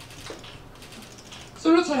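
Scattered camera shutter clicks from photographers, irregular and faint. About a second and a half in, a woman's voice comes in loud over the microphone and PA.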